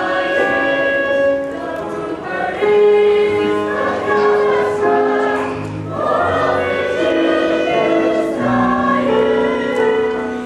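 A chorus of young voices singing a number from a stage musical, holding long notes over a live instrumental accompaniment.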